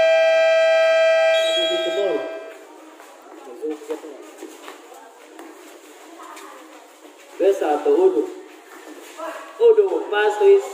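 Electronic game-clock buzzer sounding one long, steady, loud tone that cuts off about two and a half seconds in, marking the end of the second quarter of a basketball game.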